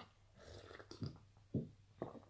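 Quiet drinking from a glass: two soft, short gulps about a second apart.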